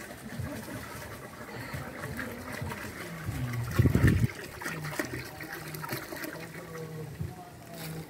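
Water pouring from a large plastic water jug into a metal cooking pot, a steady trickling splash, with a louder low thump about four seconds in.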